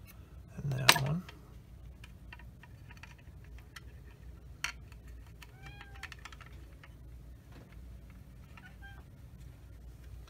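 Light clicks and taps of steel tweezers on small plastic model parts, the loudest a sharp click about a second in. A short, arching pitched call sounds once about six seconds in.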